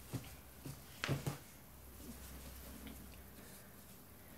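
Quiet handling noises: a few short knocks and rustles in the first second and a half as a cross-stitch piece on Aida fabric is fetched and lifted, then only a faint low hum.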